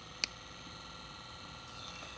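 A single click of the power/speed button on a mini massage gun about a quarter of a second in, as the speed setting is stepped. After it, the gun's small motor runs quietly and steadily.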